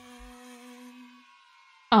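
The last held note of a pop song ringing out and fading away over about a second, leaving near silence, then a loud exclaimed "ah" from a voice right at the end.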